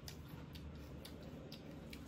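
Soft wet clicks and smacks of someone eating by hand, chewing with the lips and mouth, about two a second, over a low steady hum.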